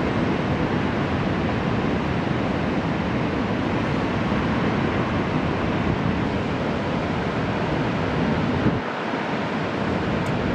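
Steady noise of heavy ocean surf with wind on the microphone. The low rumble drops away for about a second near the end.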